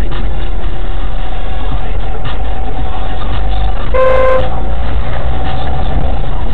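Dashcam audio from inside a car in traffic: steady low engine and road rumble, with one short car horn honk about four seconds in.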